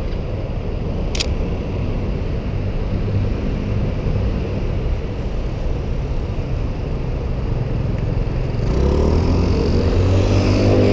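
Steady low rumble of street traffic, with one brief sharp click about a second in. Near the end a motor vehicle's engine grows louder as it passes close.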